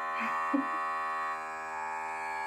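Countertop vacuum sealer's pump running with a steady droning hum as it draws the air out of a bag; the upper part of the tone thins about one and a half seconds in. A couple of soft brief taps come under a second in.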